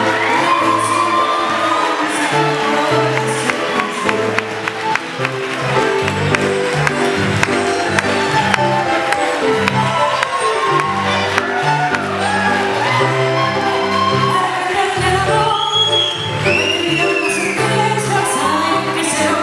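Argentine tango played by a live tango orchestra with a singer, a marked beat under a bass line and a voice over it.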